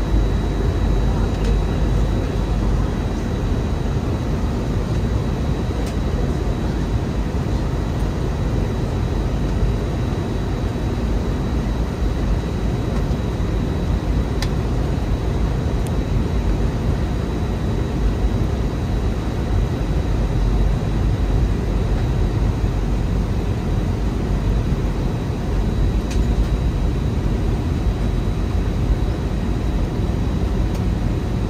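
Airbus A321 airliner cabin noise during the descent to land: a steady low rush of engine and airflow heard from a window seat by the wing, with a faint steady high whine.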